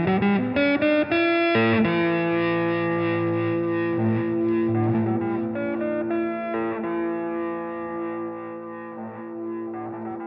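Solo electric guitar, a Les Paul–style solid body, played through effects: a quick run of rising notes in the first two seconds, then notes left ringing and overlapping as new ones are picked over them, slowly getting quieter.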